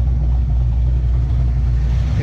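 Fox-body Mustang engine idling with a steady low drone, its ignition timing locked at a fixed 20 degrees by the MegaSquirt ECU for a timing-light check.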